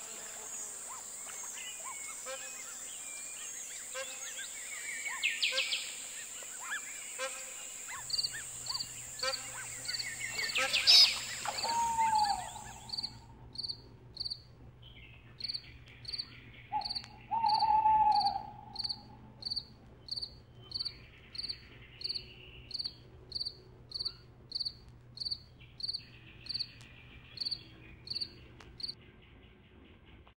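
Insects and birds outdoors: a steady high insect buzz for about the first twelve seconds, with scattered bird calls, then a short high chirp repeating evenly a little faster than once a second to the end.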